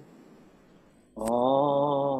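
A man singing one long held note of a worship song, heard over a video call. It starts about halfway through, with a click at its onset, after a quiet gap.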